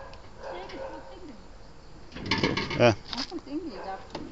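Voices: faint talk through most of the moment, with one louder, short exclamation a little past the middle.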